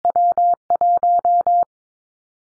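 Morse code at 22 wpm, a single steady tone keyed in dits and dahs, sending the W and the 1 of the callsign prefix EW1 (Belarus). It stops about three quarters of the way in.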